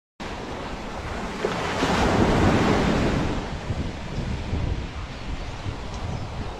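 Ocean surf washing up a sandy beach, with wind buffeting the microphone. The wash swells to its loudest about two to three seconds in, then eases off.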